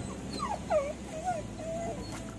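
A dog whining: a few short wavering whimpers, the last one drawn out and held on one pitch.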